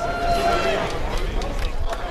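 A voice in an outdoor crowd, then scattered clapping starting near the end as an audience begins to applaud, over a steady low rumble.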